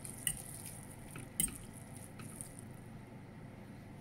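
Noodles in sauce being stirred in a stainless steel pot: soft wet squelching with a few light clicks of the utensil against the pot, the loudest about one and a half seconds in, over the steady hum of a kitchen fan.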